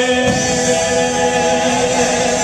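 Live gospel music: sung vocals, with voices that may include a choir or congregation, over band accompaniment through a PA system, holding long sustained notes.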